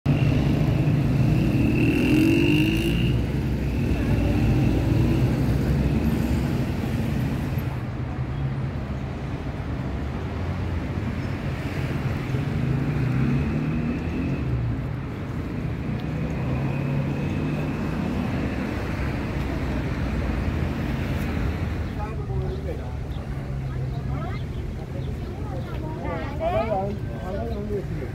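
Busy city street sound: car traffic running past with people talking, the voices clearer near the end. An engine is heard speeding up about two seconds in.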